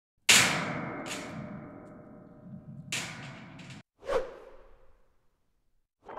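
Intro sound effects laid over title cards. A sharp whoosh-hit with a long fading tail comes just after the start, with more hits about a second and three seconds in. It cuts off short of four seconds, then a brief swoosh fades out, leaving the last second silent.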